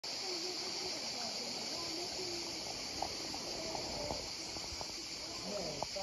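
Shallow river water running over a pebble bed, a steady high hiss, with faint voices of people talking in the background.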